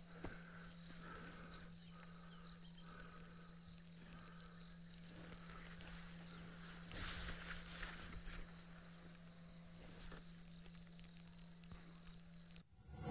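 Faint bush ambience under a steady low hum, with a faint call repeating about once a second over the first few seconds. A louder rustling crackle comes about seven seconds in and lasts a second or so.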